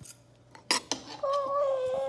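A fork clicks sharply against a plate, twice, then a child hums a long, steady "mmm" that sinks slightly in pitch.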